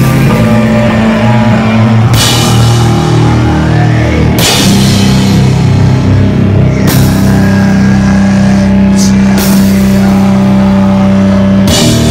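Sludge metal band playing live: long, held low bass and guitar chords over the drum kit, with a cymbal crash about every two and a half seconds.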